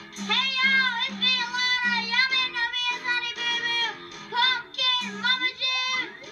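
A child singing a pop song over backing music, the sung melody running over a repeated low note.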